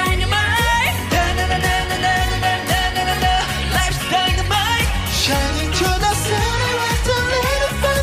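Male K-pop group singing over a disco-pop backing track with a steady bass-and-drum beat.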